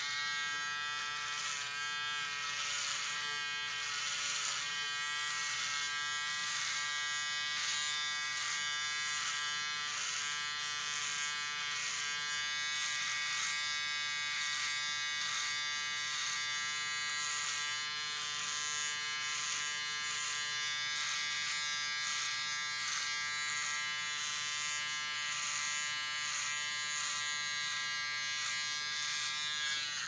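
Handheld electric trimmer buzzing steadily as it shaves off a mustache, its tone wavering in a regular rhythm as it is worked over the hair.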